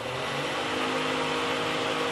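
Range hood fan over a camper-van stove running, an obnoxiously loud steady rush of air over a motor hum. It begins to wind down near the end.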